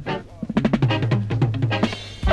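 Reggae record on an off-air FM radio recording: a quick drum-kit fill over bass notes as the tune kicks in.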